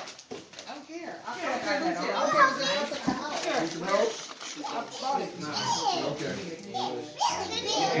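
Children's voices: chatter and talk going on throughout, not clear enough to make out as words.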